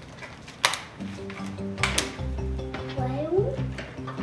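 Background music, with two sharp snaps of rubber bands being stretched onto a watermelon, one at about two-thirds of a second and one at about two seconds. A short rising voice sounds near the end.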